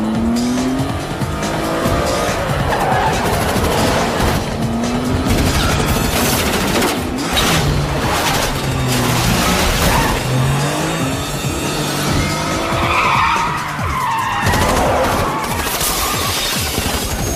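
A car-chase sound mix: a car engine revving up and down with tires squealing through skids, under a music score, with several sharp hits in the middle and near the end.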